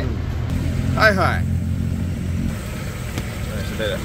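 A motor vehicle's engine running nearby: a low, steady rumble that fades away after about two and a half seconds.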